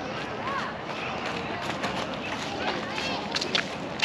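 Indistinct distant voices of people at a playground, with a few footsteps on a path in the second half.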